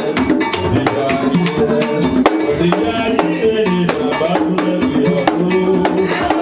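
Live Haitian Vodou drum music: several hand drums play a dense, steady beat with a melody line over it.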